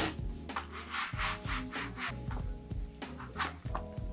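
Quick, evenly repeated rubbing strokes of a hand on leather and fabric, about four a second, with soft background music underneath.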